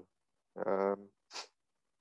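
A man's brief hesitant hum, then a short hiss of breath.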